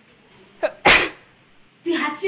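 A person sneezing once about a second in: a brief voiced catch of breath, then a sudden loud burst of breath noise.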